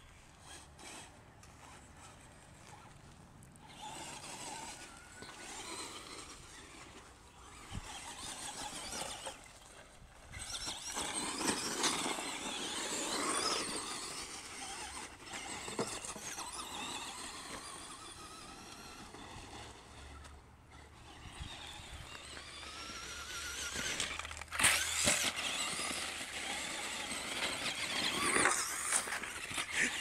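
Traxxas Stampede XL-5 RC monster truck's brushed electric motor and gears whining, rising and falling in pitch as the throttle is worked. The whine comes in bursts, loudest about halfway through and again near the end.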